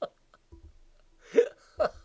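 A man laughing in short rhythmic "ha" syllables, about four a second, that trail off at the start; after a pause comes one loud short burst of voice, and the rapid laughing starts again near the end.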